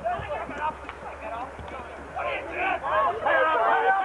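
Indistinct shouting voices of spectators on the sideline of a Gaelic football match, louder over the last two seconds.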